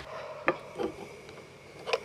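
A light knock about half a second in and a sharper click just before the end, with faint rustling between: handling noise from an old candlestick telephone being picked up.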